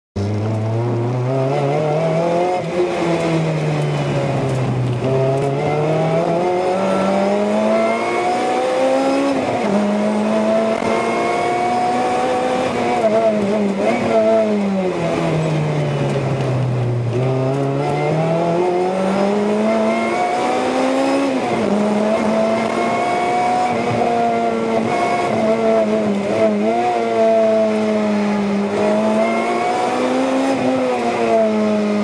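Supercharged 2ZZ 1.8-litre four-cylinder engine of a 2007 Lotus Exige S, with a Lotus sports stage 3 muffler, heard from inside the cabin at full racing pace. The revs repeatedly climb under acceleration and fall away when braking for corners.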